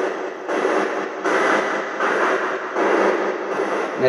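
Radio static hissing in short blocks that switch abruptly about every three-quarters of a second, as from a spirit box sweeping through radio stations during a ghost-hunting question session.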